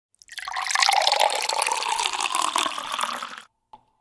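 Water pouring for about three seconds and stopping abruptly. Near the end comes a short click, followed by a faint, steady ringing tone.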